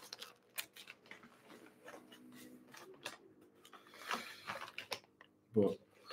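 Faint, irregular clicks and short rustles of small objects being handled close to the microphone, with a few sharper ticks.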